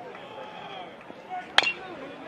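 A metal baseball bat hitting a pitched ball once, a single sharp crack with a short ring about one and a half seconds in. The hit is a ground ball. Low, steady ballpark crowd noise underneath.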